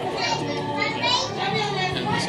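Children's voices chattering and calling out, with other people talking behind them.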